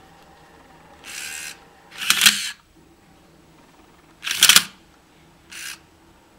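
A small electric motor whirring in four short bursts: a brief one about a second in, two longer, louder runs around two and four and a half seconds in, and a short one near the end.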